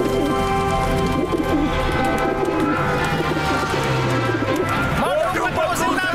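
Cartoon film soundtrack: music with long held notes and cooing birds, then a run of high calls rising and falling in pitch from about five seconds in.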